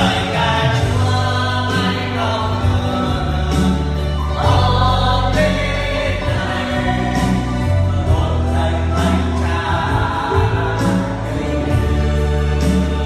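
Gospel worship song: singing voices over electronic keyboard accompaniment with sustained bass notes and a steady beat.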